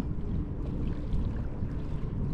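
Wind buffeting the microphone as a fluctuating low rumble, over faint lapping of choppy water, with a faint steady hum underneath.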